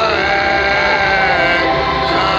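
Loud music from a festival stage, with a crowd singing along in many voices at once.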